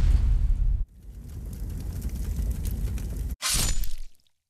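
Logo-reveal sound effect: a loud impact with a heavy bass rumble, then a quieter rumble that slowly swells and cuts off suddenly, then a second sharp hit near the end that dies away quickly.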